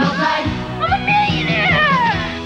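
Advertising jingle: the sung tagline "of life" over upbeat backing music, then a high sliding tone that rises and falls over the last second.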